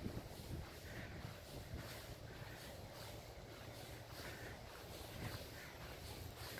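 Faint outdoor ambience in falling snow: a steady low rumble with soft crunching steps in fresh snow about once a second.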